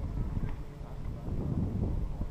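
Wind buffeting the camera's microphone on a moving chairlift chair: an uneven low rumble that swells and dips.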